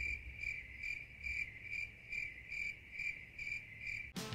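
Crickets chirping steadily, about three chirps a second, a stock sound effect for an awkward silence.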